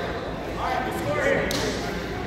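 Indistinct voices of people talking in a gymnasium, with a short scuffing noise near the end.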